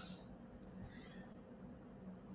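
Near silence: faint room tone, with a faint, short high-pitched sound about a second in.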